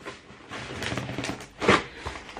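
Cardboard shipping box being handled and opened by hand: rustling and scraping of cardboard and packing, with one louder scrape near the end.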